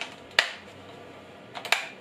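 Dry clicks of an unpowered Parkside PWS 125 E4 angle grinder's switch being worked: one sharp click about half a second in, then a quick cluster of clicks near the end. No motor starts, because the grinder is not plugged in.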